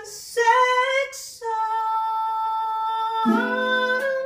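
A woman singing with ukulele accompaniment: a short sung phrase, then one long steady held note, with strummed ukulele chords coming in about three seconds in.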